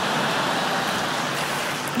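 Live audience applauding and laughing in a steady wash of noise after a punchline.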